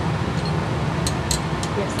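Laboratory fume hood running with a steady, kind of loud rushing noise, with a few faint light clicks about a second in.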